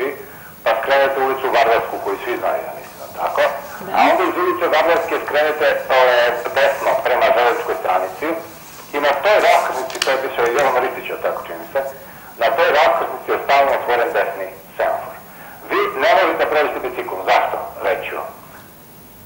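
Speech: a man talking continuously over a telephone line.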